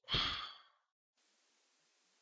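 A man's sigh: one short breath out, about half a second long and fading away, then silence.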